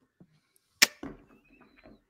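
A single sharp click or knock a little under a second in, followed by a faint murmur.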